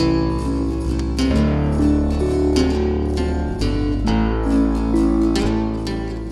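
Background music of plucked acoustic guitar, a run of picked notes over a sustained low bass.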